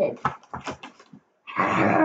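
A young girl's short non-word vocal sounds, then from about one and a half seconds in a loud, rough, breathy vocal noise, a playful animal-like sound.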